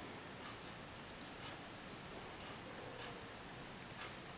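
Faint, soft rustling and tearing as fingers pull cooked chicken breast apart into shreds, with a few light, irregular crackles.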